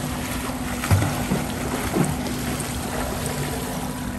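Pool water splashing and churning from swimmers' arm strokes and kicks, with a couple of dull thumps about one and two seconds in.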